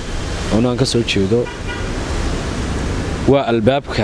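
A man speaking Somali in short phrases near the start and again near the end. A steady background hiss fills the pause between them.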